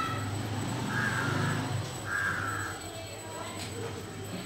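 Two short, harsh animal calls, about a second and about two seconds in, over a steady low hum.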